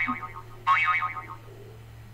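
Two short warbling tones, each about half a second long, over a steady low hum.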